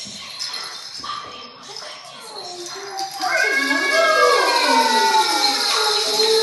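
A short lull, then, about three seconds in, several loud overlapping cries that slide down in pitch, like animals howling.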